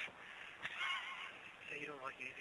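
Faint voice over a telephone line, its pitch wavering, with a few short sounds near the end.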